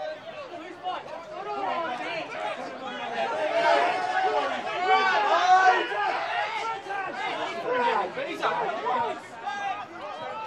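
Several voices calling and shouting over one another during play in an Australian rules football match, loudest around the middle.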